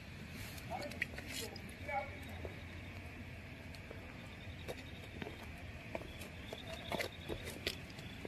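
Quiet night-time ambience in a shallow muddy ditch: faint scattered ticks and small water sounds as someone moves through the water.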